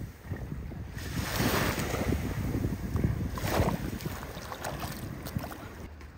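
Small waves washing over sand in shallow water at the shoreline, with two louder washes about two seconds apart. Wind rumbles on the microphone underneath.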